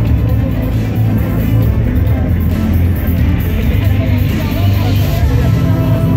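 Loud event music with a heavy, steady bass, over crowd voices. A hiss swells in the middle and fades.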